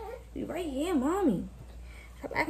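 A baby's wordless vocal sound lasting about a second, wavering up and down in pitch several times.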